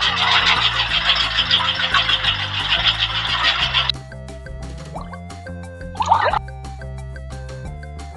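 Battery-powered toy washing machine running after its button is pressed: a loud, fast buzzing rattle that cuts off suddenly about four seconds in. Background music plays throughout, and a short warbling chirp comes near the end.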